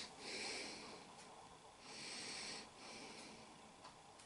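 Faint breathing close to the microphone: soft, hissy breaths in and out, each lasting under a second, with short gaps between them.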